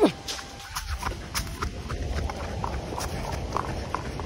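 Footsteps on a dirt and grass path: irregular short knocks and scuffs, several a second, over a low rumble of wind on the microphone.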